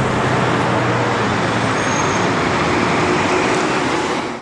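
Steady road traffic noise from passing cars, with a low engine hum under it.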